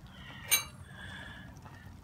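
A single sharp metallic clink with a brief ring about half a second in, as the cast-iron Dutch oven lid held on its lid lifter is set down.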